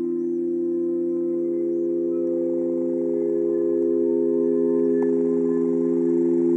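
Sound stones, a row of upright stone slabs stroked with the hands, ringing with several steady, overlapping low tones that hold without any strike; a higher tone joins about a second in.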